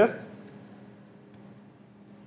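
A single short, faint key click from a laptop keyboard a little past the middle, as a command is typed and entered in a terminal.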